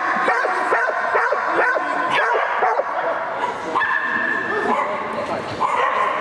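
A dog barking in quick high yips, several a second through the first half and more spaced after, while running an agility course.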